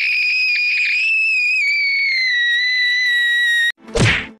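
A girl's long, very high-pitched scream, held on one note that sinks a little in pitch, cuts off suddenly near the end. A short burst of noise follows right after.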